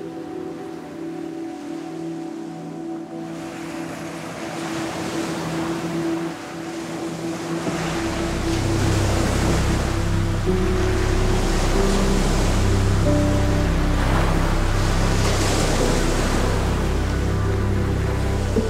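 Background music of held tones, with low bass notes joining about eight seconds in, laid over surf washing onto rocks that grows louder from about three seconds in.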